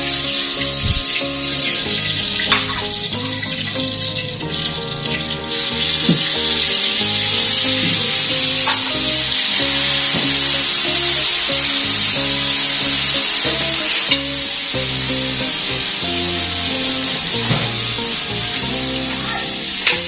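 Background music over fish sizzling in hot oil in a wok; the sizzling grows stronger about five seconds in.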